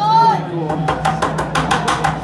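Ice hockey arena sound: a short shout, then a fast run of sharp knocks, about five a second, over a steady low hum.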